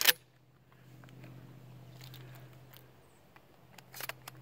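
A pump-action shotgun's slide is racked with a sharp metallic clack, chambering a mini shell. Faint handling clicks follow, and near the end a few clicks as the next shell is pushed into the magazine tube.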